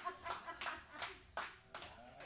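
Sparse applause from a small audience: a handful of scattered hand claps that thin out and fade toward the end.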